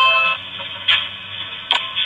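Low-fidelity doorbell-camera clip audio: a held tone fades out at the start, then two sharp knocks a little under a second apart over a faint hum.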